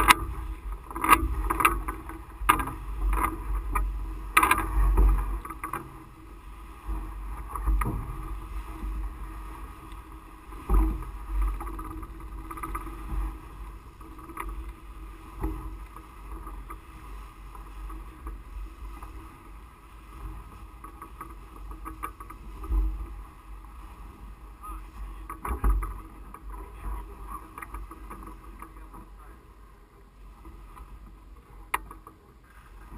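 Wind gusting over the microphone of a camera mounted on top of a powered parachute's mast, coming in low gusts, with scattered knocks and rustles, busiest in the first five seconds.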